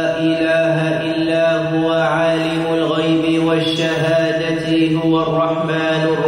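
A man's voice chanting a Quranic verse in Arabic in tajwid style, drawing out long held notes with melodic turns between them.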